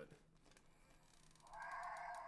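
Hasbro electronic Spinosaurus toy playing its recorded roar through its small built-in speaker, a thin, narrow-sounding roar that starts about one and a half seconds in after a near-silent pause. The toy's cheap electronics only partly work.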